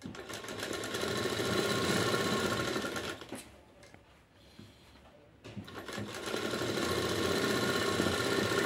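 Straight-stitch sewing machine running steadily, stitching a sleeve into a blouse's armhole. It stops about three seconds in for a couple of seconds while the fabric is turned, then starts up again.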